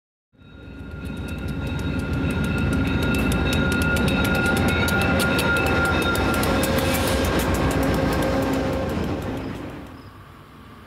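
VIA Rail passenger train passing close at speed: a steady rumble and rapid clatter of wheels over the rails, with high steady ringing tones over it. It swells in over the first two seconds and fades away near the end.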